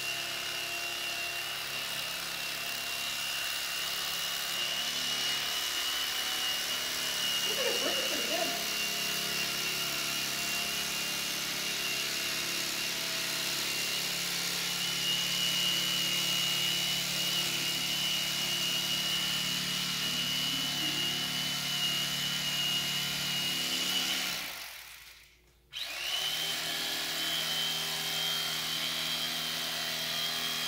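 Electric carving knife running as it saws through a seven-inch layered foam mattress, a steady high motor whine over a low hum. It switches off about twenty-five seconds in and starts up again a second later.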